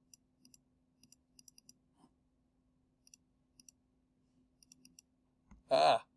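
Computer mouse clicking faintly: a scattering of quick clicks, several in close pairs like double-clicks, as anchor points are placed in a vector drawing program. A low electrical hum runs underneath, and a brief voice sound comes just before the end.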